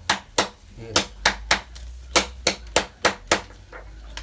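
A hand stone pounding a strip of carrizo (giant cane) against a stone anvil: a steady run of sharp knocks, about three a second. The strokes crush and flatten the cane so it can be worked for basket weaving.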